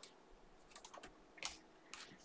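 A few faint, sparse clicks and taps of trading cards being handled on a tabletop.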